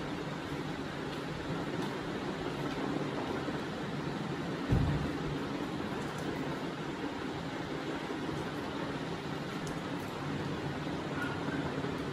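Steady, even background noise of the kind a fan or air conditioner gives, with a single dull thump about five seconds in.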